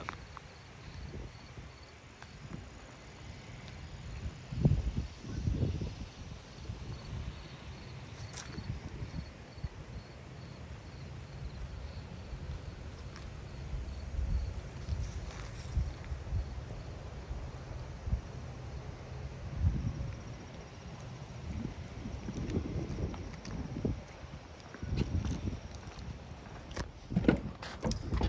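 Outdoor ambience: a low wind rumble on the microphone, with soft, irregular footsteps on pavement.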